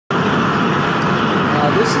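Propane burner of a firebrick forge running at 10 psi: a steady rushing noise of gas and flame.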